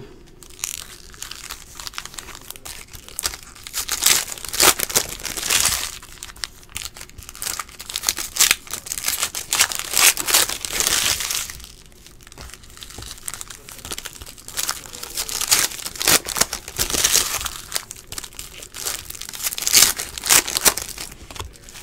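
Foil wrappers of Optic basketball trading-card packs being torn open and crinkled by hand, in irregular bursts of crackling with short lulls about six and twelve seconds in.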